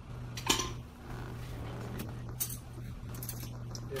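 A spoon knocking and scraping in a plastic Vitamix blender jar of thick blended food scraps: one sharp knock about half a second in, then a few lighter clicks, over a steady low hum.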